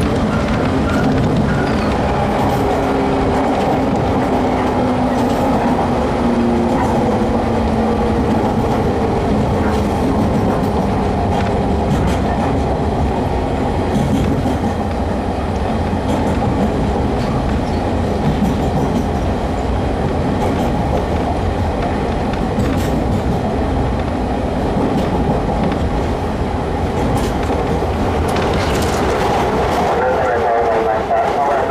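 Onboard running noise of a JR 115-series electric train, heard inside a motor car: a steady rumble of steel wheels on rail, with the traction motors' tones falling in pitch over the first several seconds and a few scattered wheel clacks.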